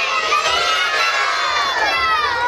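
A crowd of children shouting together in answer to a question, many high voices at once.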